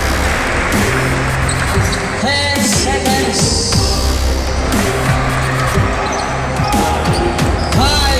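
A basketball bouncing on a hardwood gym court during play, as repeated sharp bounces, with music playing throughout and brief shouts about two seconds in and near the end.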